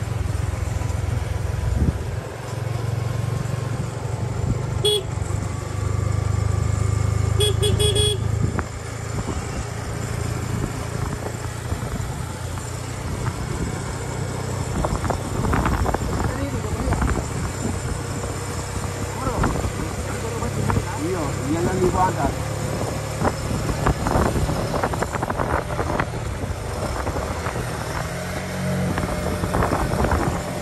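Motorcycle engine running steadily as it rides along a road. A horn beeps briefly about five seconds in, then in a short run of quick beeps around eight seconds.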